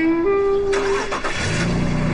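A car engine starting, a rush of noise followed by a low steady engine note from about halfway in, under a light melodic music score.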